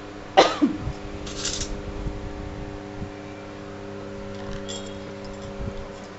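A short cough-like vocal burst about half a second in, followed by a brief hiss. After that come faint knocks of a spoon and glass bowl as spinach soup is spooned out, all over a steady low hum.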